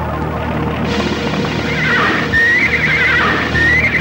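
Film score playing, with a horse whinnying twice over it: a high, wavering neigh about two seconds in and another near the end.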